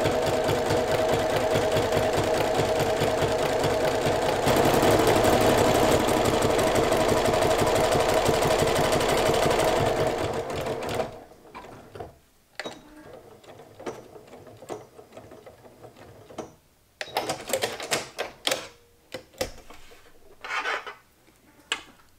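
Sewing machine running steadily, sewing a zigzag stitch with a walking foot through a layered quilted fabric postcard, a little louder about four seconds in. It stops about halfway, and the rest holds only quieter scattered clicks and rustles.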